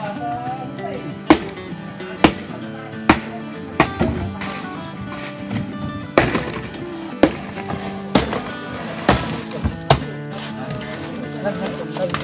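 Hammer blows breaking block ice in a boat's fish hold: sharp, irregular knocks about once a second, the loudest a little over a second in, with music playing underneath.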